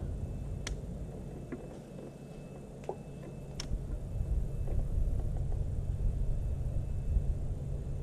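A steady low rumble, growing louder about halfway through, with a few sparse light clicks from a fishing rod and reel being handled as a lure is retrieved.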